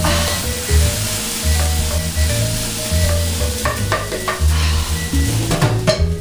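Background music with a repeating bass figure, over a steady sizzling hiss from a lidded stockpot boiling on a gas burner. A few clicks and knocks come near the end.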